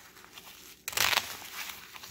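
Stiff Gore-Tex shell fabric crinkling as the jacket's front flap is pulled open, with a sudden short rip of Velcro coming apart about a second in.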